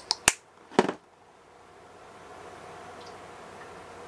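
Three sharp clicks in the first second from makeup bottles being handled while mixing moisturizer into foundation.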